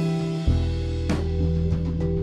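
A rock band playing an instrumental passage: drum kit with cymbal strikes, electric guitar, bass guitar and keyboard, with no vocals. A low bass note comes in about half a second in.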